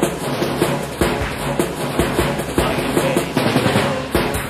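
Early-1990s UK hardcore rave music mixed by a DJ: rapid chopped breakbeat drums over a deep bassline and synth tones.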